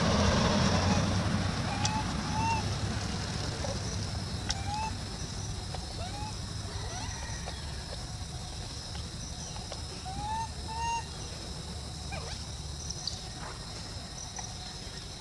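A car passes on the road, loudest in the first two seconds. After it, short rising-and-falling squeaks repeat every second or two, typical of a baby macaque calling while held by its tail, over a steady high insect buzz.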